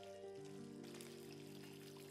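Quiet background music of long held notes forming a slow chord, with notes entering one after another.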